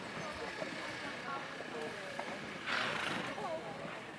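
Distant, indistinct voices in the background, with a short breathy rush of noise about three seconds in.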